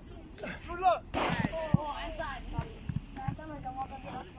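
Footballs being struck and caught in a goalkeeper drill: several short, sharp thuds, the sharpest about a second and three-quarters in, over voices in the background.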